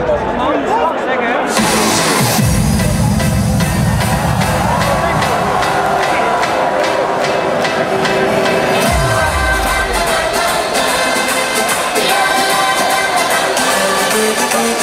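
Loud electronic intro music of a hardstyle set played through an arena sound system, with a crowd cheering. The music fills out in the treble about a second and a half in, and deep falling bass sweeps come twice, about six and a half seconds apart.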